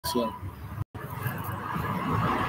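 Street background noise with a low rumble like passing road traffic. A brief voice-like sound comes at the very start, and the sound cuts out completely for a moment a little under a second in.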